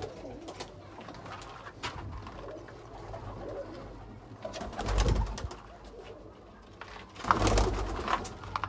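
Domestic highflyer pigeons cooing softly in a small wooden loft, with scattered light clicks. Two louder noisy bursts come about five seconds in and again near the end.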